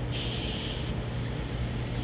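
Steady low workshop hum, with a soft hiss for most of the first second.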